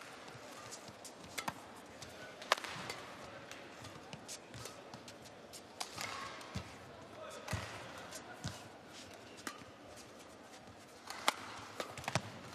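Badminton rally: racket strings striking the shuttlecock in sharp, irregular hits a second or two apart, the loudest about two and a half seconds in and near the end.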